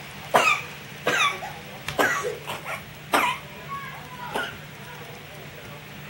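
A baby's short effort grunts and squeaks, about eight in quick succession, each dropping in pitch, as he works at getting down a step. A steady low hum runs underneath.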